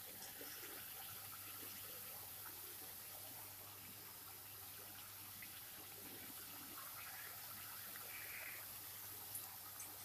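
Faint, steady sizzling and bubbling of gram-flour (besan) fafda strips deep-frying in hot oil in a kadhai.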